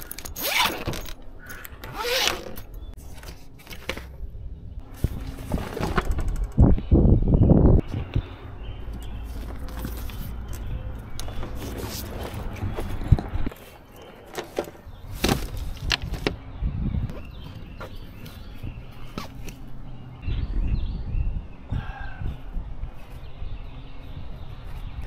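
Handling sounds of unpacking and setting out a Renogy 400-watt portable solar panel suitcase: a zipper on its carrying case, then irregular clicks and knocks of the folding panels and their frames, over a low rumble. Background music plays under it.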